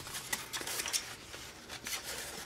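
Paper plate and construction paper handled and lifted off a table: a few faint, short rustles and light scrapes.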